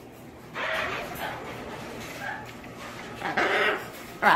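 Young blue-and-gold macaws making harsh squawking calls as they play on a perch stand: one call about half a second in, a short one midway and a louder one near the end.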